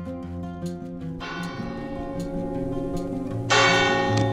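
A church tower bell tolling: a strike about a second in and a louder one near the end, each ringing on and slowly dying away.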